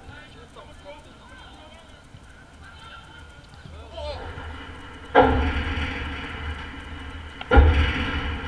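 Faint shouts from players, then two sudden loud thumps on the goal right by the camera, about five seconds in and near the end. Each thump is followed by a deep rumble that slowly dies away as the goal frame and net shake.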